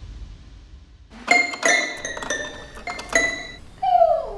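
A run of about seven high, bell-like struck notes, each ringing briefly, then near the end a dog starts a howl that slides down in pitch.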